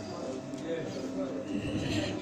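Faint, indistinct voices and room noise in a pause between sentences of a man's speech.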